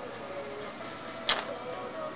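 A single short, sharp click a little over a second in, over faint steady background tones.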